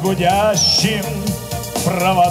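A folk choir singing into stage microphones over amplified backing music, holding notes with a clear vibrato.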